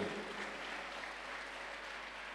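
A large congregation applauding, a faint, steady patter of clapping with no voices over it.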